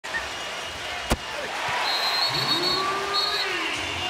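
Arena crowd noise during an NBA game, with a single sharp thump about a second in, then a referee's whistle blown twice in short blasts, a longer one followed by a brief one.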